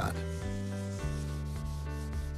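Scouring pad rubbing wax into a wooden tabletop, over background music of sustained chords that change twice.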